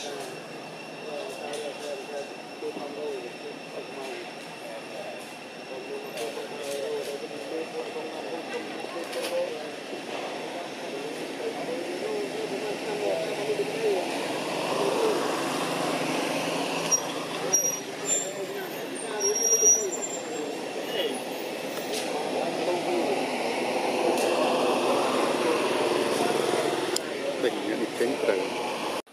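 Outdoor background of people's voices chattering at a distance. A motor vehicle passes about halfway through, and another passes near the end.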